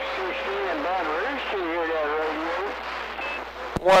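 A distant station's voice coming in over a CB radio's speaker, muffled and unintelligible under steady static hiss, with a faint steady whistle in the first second or so. It is a long-distance skip signal.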